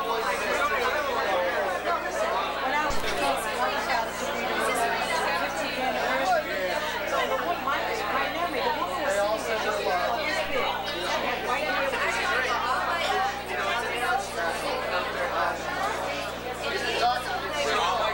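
Many people talking at once: a steady babble of overlapping party chatter, with no single voice standing out.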